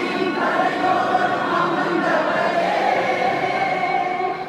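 Many voices singing a devotional hymn together in long held notes.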